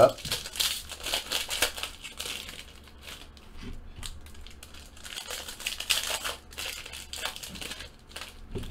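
Foil trading-card pack wrappers (2017 Upper Deck Fleer Ultra Marvel Spider-Man packs) crinkling and tearing as they are pulled open by hand. The crinkling comes in two spells, over the first couple of seconds and again around six seconds in, with quieter handling between.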